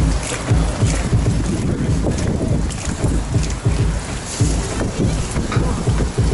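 Wind buffeting the microphone, with a low rumble coming in evenly spaced pulses about twice a second: the beat of dance music played for the dancers.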